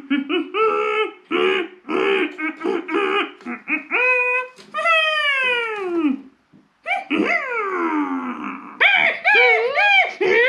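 A person laughing in quick repeated bursts, then two long falling vocal cries with a short break between them, and a wavering voice near the end.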